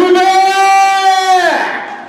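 A single singing voice holding one long note for about a second and a half, then sliding down and trailing off, as part of a song.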